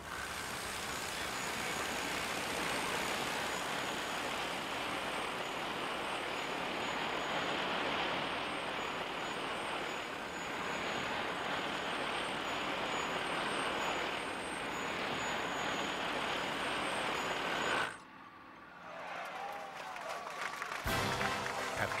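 Descender fall-arrest rig paying out its wire under a falling stuntman's weight, a loud steady whirring rush that cuts off suddenly about eighteen seconds in.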